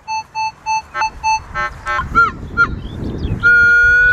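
Minelab metal detector giving target tones as the coil passes over a buried object: about five quick beeps, then a few wavering tones, then a long steady tone starting about three and a half seconds in. It is a strong signal from a buried coin, which the detectorist thinks could be silver.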